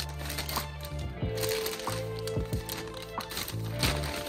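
Background music with a steady bass line, over the crinkling of a plastic mailer bag as it is cut open with scissors and pulled apart, with several sharp crackles, the loudest near the end.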